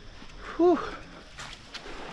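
A man's single breathy "whew", falling in pitch, about half a second in, over faint steady background noise, with a couple of light clicks later on.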